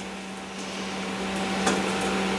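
Steady hum of a running kitchen appliance over a faint hiss that grows slightly louder, with one faint tap near the end.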